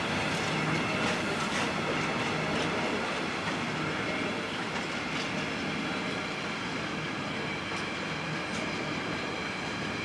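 Container freight train wagons rolling past at speed: a steady rush of steel wheels on rail, with irregular clicks as wheels cross rail joints.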